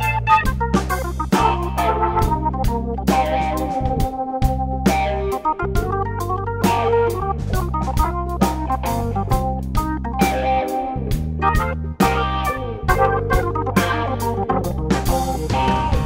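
Blues-rock trio playing an instrumental passage: Hammond organ chords over a sustained low bass, electric guitar and a drum kit keeping a steady beat.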